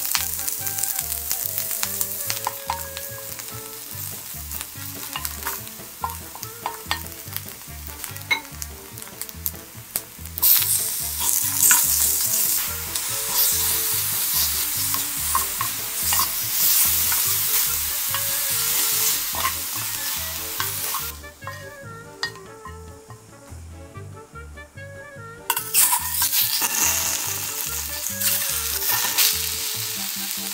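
Chopped scallions and food frying in hot oil in a stainless steel pan, sizzling steadily with a wooden spoon stirring and scraping against the pan. The sizzle grows louder about ten seconds in, falls away for a few seconds past the twenty-second mark, then comes back loud.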